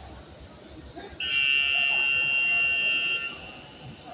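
Electronic buzzer sounding once, a steady, loud tone lasting about two seconds that starts and cuts off abruptly, over quiet sports-hall background.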